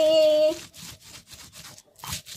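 Stone pestle grinding chilies on a round black stone mortar (cobek): quick, repeated rubbing and scraping strokes of stone on stone. For about the first half second a woman's voice holds a drawn-out vowel over it.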